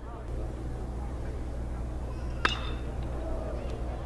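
A metal college baseball bat pings sharply once as it hits the pitch, about two and a half seconds in, over a steady stadium hum and crowd murmur.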